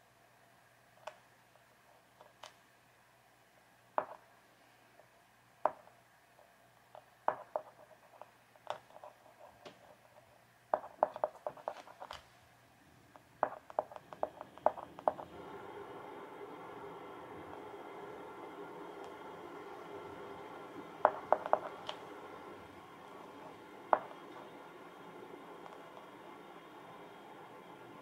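Sharp taps of a glue marker's tip dabbed against a stretched canvas, some single and some in quick runs of several taps. About fifteen seconds in, a steady hum starts up underneath.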